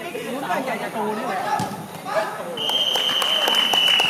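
Players and spectators calling out on a soccer pitch, then a referee's whistle sounds one long steady blast starting about two and a half seconds in.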